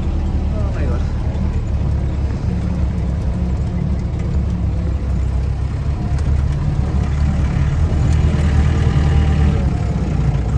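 Inside the cab of a 1994 Mahindra jeep driving slowly over a rough dirt track: steady engine and road rumble, a little louder near the end.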